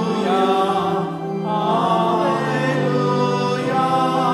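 Congregation singing a slow, chant-like liturgical verse, the melody moving over steady held low notes.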